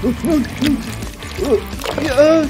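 Four or five short wordless vocal sounds, hum-like or grunt-like, each rising and falling in pitch, over background music.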